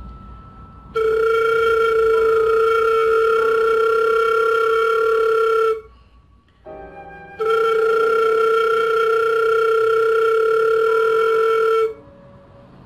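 Flute headjoint played alone with its open end closed off, flutter-tongued (frullato): two long steady notes on the same pitch, each about five seconds, with a short break between them.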